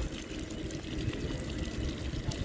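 Rows of small ground-level fountain jets splashing steadily into a shallow sheet of water on stone paving.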